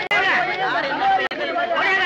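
Speech only: voices talking over one another, briefly cut off twice.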